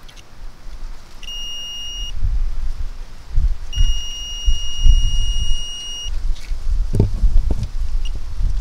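DIY metal detector kit's 5V active buzzer giving two steady high-pitched beeps, a short one and then a longer one of about two and a half seconds, as the board's search coil passes over metal buried in the soil. Low rumbling on the microphone and a couple of knocks near the end.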